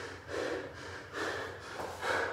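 A man breathing hard and fast, about one loud breath a second, winded between rounds of a barbell-and-burpee workout.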